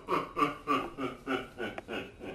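A man laughing in a quick run of short 'ha' pulses, about three a second, growing weaker toward the end.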